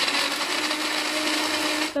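Countertop blender running at full speed, grinding shallots, garlic, lemongrass, ginger and turmeric with a little water into a fine paste. Loud, steady whirring with a constant hum, cut off abruptly near the end.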